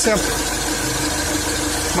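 Mitsubishi Triton's common-rail DI-D diesel engine idling steadily and smoothly, with no knocking or rattling, and a steady whine over the idle.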